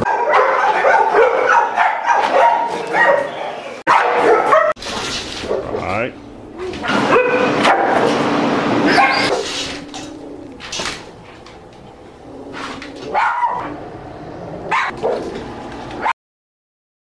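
Dog barking in several separate bouts, broken by abrupt cuts between clips.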